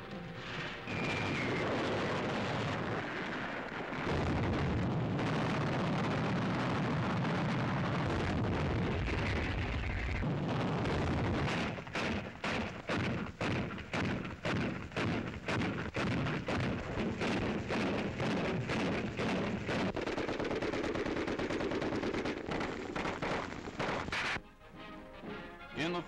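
Battle sounds of artillery gunfire: a dense, continuous roar of firing for roughly the first ten seconds, then a long run of rapid, separate shots, several a second.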